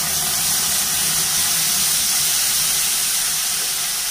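Dal cooking water poured into a hot oiled aluminium kadai of sautéed vegetables, hitting the pan with a steady hiss and sizzle.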